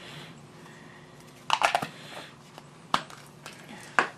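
Light handling noises of small items on a workbench. A brief cluster of rustles and clicks comes about a second and a half in, then single sharp clicks near three seconds and again at the end.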